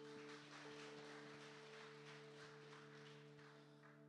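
Soft background music, a held chord, under faint audience clapping that fades out toward the end.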